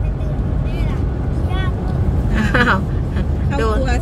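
Steady low road and engine rumble inside a moving car's cabin at highway speed, with brief high-pitched voices breaking in several times.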